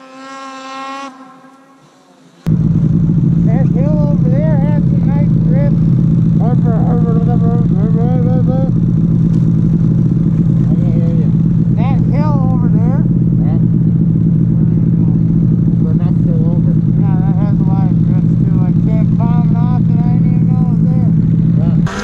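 About two and a half seconds in, a snowmobile engine cuts in suddenly and runs loud and steady as the sled is ridden, heard from the rider's seat. Muffled voices come and go over the engine.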